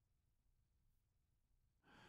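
Near silence: the gap between narrated passages of a studio audiobook recording, with a faint intake of breath near the end as the narrator readies to speak.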